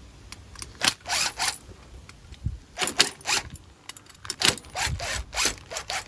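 Hitachi cordless driver with a T30 Torx bit running in short bursts as it backs small screws out of an aluminium camber plate, so the centre pillow-ball insert can be removed. There is some rustling from the plastic bag around the plate.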